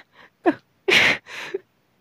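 A storyteller's voice making short non-word vocal sounds: a brief voiced sound about half a second in, then a sharp, breathy burst about a second in, followed by a fainter one.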